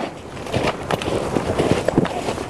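Footsteps of a person and dogs walking through wet snow and slush: irregular crunching steps over a steady noisy background.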